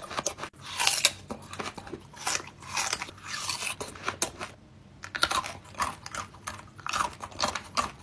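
Crisp, irregular crunching of a mouthful of watermelon rind being chewed, with a short pause about halfway through before the crunching picks up again.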